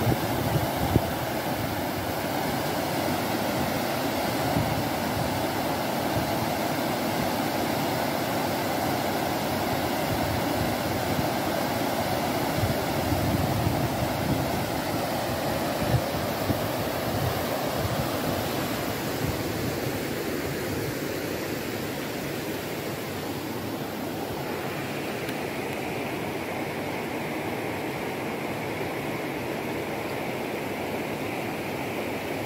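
Water rushing steadily over a low weir and through concrete blocks in a shallow river. About three-quarters of the way through, the sound turns lighter and higher, a shallow riffle over stones.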